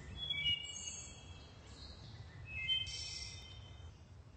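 Wood thrush singing two fluted song phrases about two seconds apart, each a few clear notes that end in a higher, thinner trill.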